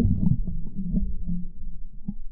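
Muffled low rumbling and sloshing of river water around a submerged camera, heard through its waterproof housing, with a few faint knocks. It is loudest at first and eases off after about half a second.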